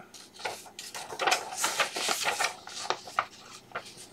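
Paper rustling and crackling as the pages of a folded letter-size paper booklet are handled and turned, a run of irregular short crackles that thins out near the end.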